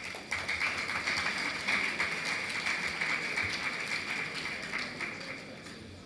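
Audience applauding, starting just after the introduction and dying away near the end.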